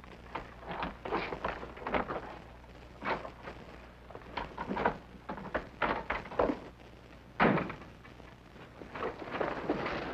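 Scattered knocks, scrapes and thuds at irregular intervals, the loudest about seven and a half seconds in, over a steady low hum.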